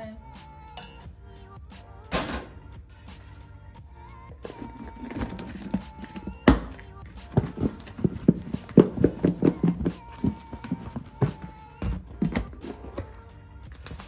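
Pork ribs being shaken in seasoned flour inside a lidded plastic bowl: quick thuds and knocks of the ribs against the plastic, coming fastest and loudest about seven to ten seconds in, to coat the ribs for frying.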